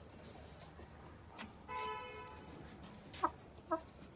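Giriraja hens clucking while foraging in a coop: a steady held note of about half a second near the middle, then two short, sharp clucks near the end, which are the loudest sounds.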